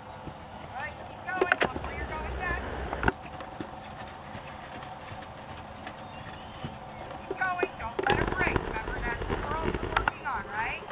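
Hoofbeats of a horse cantering on sand arena footing, with indistinct voices in bursts about a second in and again near the end.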